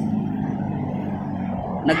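An engine idling steadily with a low, even hum.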